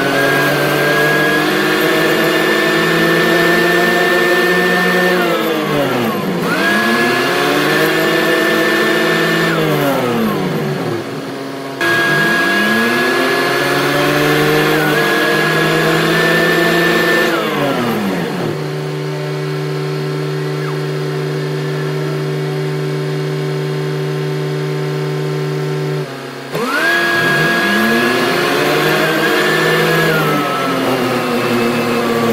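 Backhoe loader's diesel engine running while driving, its pitch dipping and climbing back several times as the throttle is eased off and opened again, with a high whine above it. In the middle it settles to a steady low run for several seconds, then revs back up near the end.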